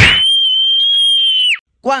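An edited-in sound effect between skits: a sudden swoosh, then a steady high-pitched beep held for about a second and a half that sags in pitch as it cuts off.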